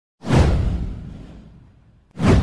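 Whoosh sound effect for an intro title animation: a sudden swish with a deep low boom beneath it, sweeping down in pitch and fading out over about a second and a half.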